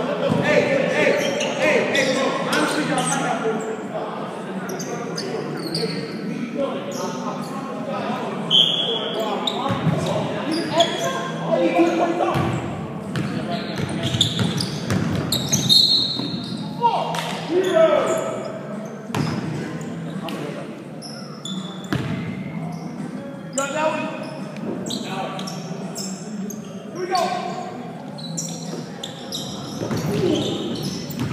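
Basketball game sounds in a large echoing gym: the ball bouncing on the hardwood floor, a few short high squeaks, and players calling out indistinctly.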